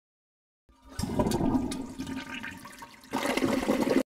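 A rushing, water-like sound effect over the end screen: it starts suddenly under a second in, eases off, then swells again about three seconds in.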